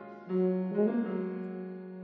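Yamaha YFB821S bass tuba and Yamaha grand piano playing together, in a contemporary classical piece. A loud entry comes about a third of a second in, then a low note is held steadily beneath.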